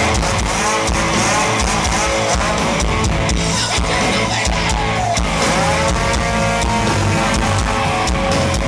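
A chainsaw engine revving up and down, its pitch rising and falling in several swoops, over a live rock band playing with distorted guitar and drums.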